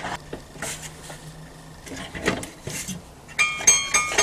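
Small metal clicks as a bicycle quick-release lever is worked on a scroll saw's blade clamp. Near the end comes a quick run of bright, pitched metallic pings.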